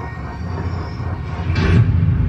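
Film-trailer sound design played back: a low rumble under sustained steady tones, swelling about three quarters of the way through with a short whoosh.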